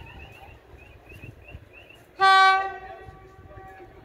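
Electric locomotive's horn giving one short blast just past halfway, a single steady note that dies away over about a second.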